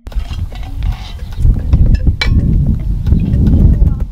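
Wind rumbling on the camera microphone outdoors, under faint voices of a group of people, with one sharp click a little after two seconds in.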